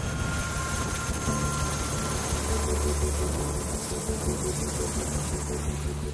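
Helicopter in flight, heard from inside the cabin: a steady rush of engine and rotor noise with a low, even drone underneath.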